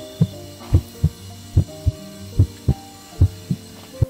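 Heartbeat sound effect over soft held music chords: a low double thump, lub-dub, repeating a little faster than once a second.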